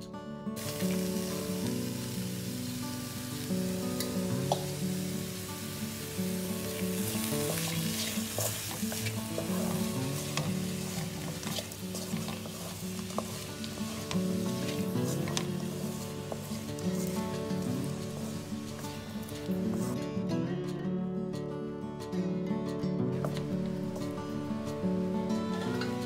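Sliced ivy gourd sizzling in hot oil in a steel wok as it is stirred, with scattered scraping clicks of the stirrer against the pan. Steady background instrumental music plays underneath, and the sizzle thins for a few seconds near the end.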